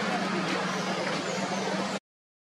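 A steady low mechanical hum under a loud wash of outdoor noise, cutting off abruptly at the end.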